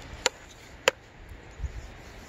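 Two short, sharp clicks about two-thirds of a second apart, over a faint steady outdoor background.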